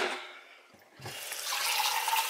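A steady rushing noise starts about a second in, after a brief quiet, and carries a faint held tone.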